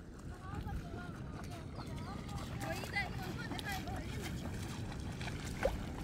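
Faint distant voices of people talking and calling out, over a steady low rumble of outdoor background noise.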